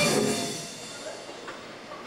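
A live rock band's music breaks off. The electric guitar and the other instruments ring out and fade over about a second into a low hiss.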